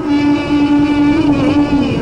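Coptic Orthodox hymn sung in Arabic: one long held note over instrumental accompaniment, wavering slightly near the end.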